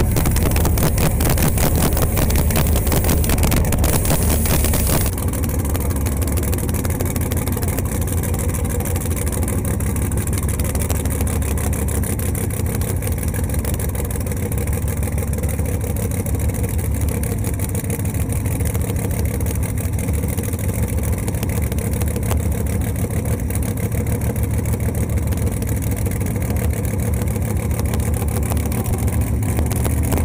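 Camaro drag car's engine idling loudly close by, with a lumpy, pulsing beat. It runs harsher and louder for about the first five seconds, then settles to a steady idle.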